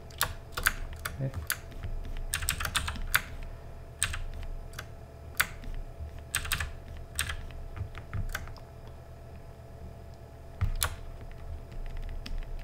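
Computer keyboard keys and mouse buttons clicking in irregular clusters, with a pause of about two seconds late on before one last click.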